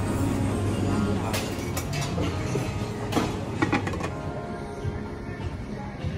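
Buffet restaurant room sound: a steady low hum under background music and distant voices, with a few sharp clinks of tableware, one about a second and a half in and a cluster a little past three seconds.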